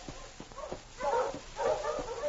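Husky sled dogs whining and yipping in two short bouts in the second half, a sound effect in an old radio drama recording.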